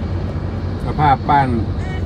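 Steady low rumble of road and engine noise from a vehicle travelling at highway speed, heard from inside the vehicle, with a man's voice speaking briefly partway through.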